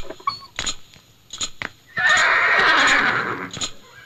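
A loud, rough, animal-like call about two seconds in, lasting about a second and a half and fading out, over a series of scattered sharp knocks.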